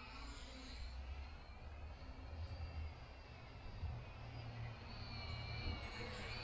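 Faint, distant buzz of a small toy quadcopter's motors and propellers flying overhead, its pitch slowly shifting, over a low rumble of wind on the microphone.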